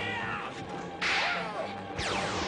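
Cartoon whip-crack sound effect: a sudden sharp crack about a second in with a hiss that falls in pitch and trails off, and another crack starting right at the end.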